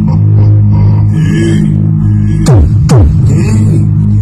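Electronic music with a heavy, steady bass drone, played very loud through a paredão sound wall of Triton car-audio speakers. Two quick falling pitch sweeps cut through the track about two and a half and three seconds in.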